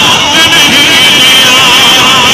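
Loud, distorted voice coming over a public-address loudspeaker, its pitch wavering up and down.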